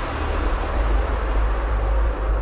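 A hissing noise sweep that fades slowly over a steady deep bass: a transition effect in the electronic soundtrack.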